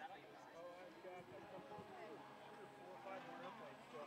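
Faint voices of several people talking in the background.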